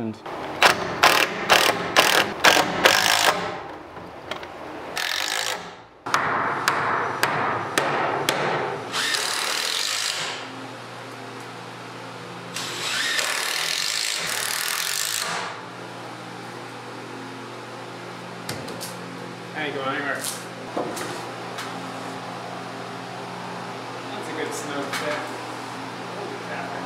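A power drill-driver running in several bursts of a few seconds, driving screws through a bowed 2x4 into the stud beside it to pull the board straight, with sharp knocks of wood in the first few seconds. Heard through a poor camera microphone, with muffled talk and a steady low hum behind it.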